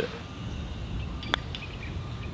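Quiet outdoor ambience: a low, steady background hiss and rumble with a few faint, short, high bird chirps. One short, sharp click stands out a little past halfway.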